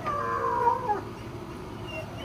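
A dog whining: one drawn-out, slightly falling cry lasting about a second.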